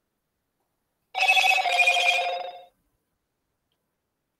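A short electronic ringing tone lasting about a second and a half, starting about a second in. It is made of several steady notes that step slightly down in pitch halfway through.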